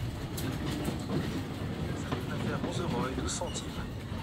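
Restaurant background ambience: a low murmur of other people's voices, with a few short, faint clicks near the end.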